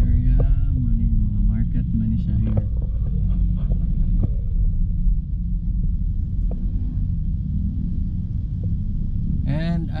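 Steady low rumble of a car's engine and road noise heard from inside the cabin while creeping through traffic, with a few light knocks.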